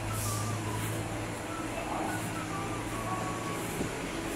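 Rail station background: a steady low hum over a wash of noise, with a faint, wavering higher whine and a brief hiss just after the start.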